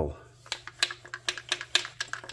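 Partly disassembled Craftsman chainsaw lifted and shaken, its loose parts rattling in a quick, irregular run of light clicks.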